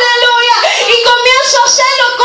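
A woman's loud, high-pitched voice singing out held, wavering phrases into a handheld microphone.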